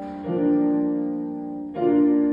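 Electronic keyboard played with a piano sound: slow chords held and left to fade, a new chord struck about a quarter second in and another near the end.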